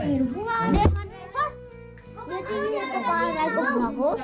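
Children's voices chattering and calling out close by, with music playing in the background; the voices drop off for about a second in the middle, then come back.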